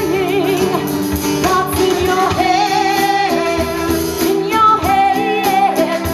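Live band performing: a woman sings lead with sustained, wavering notes over a strummed acoustic guitar and a drum kit.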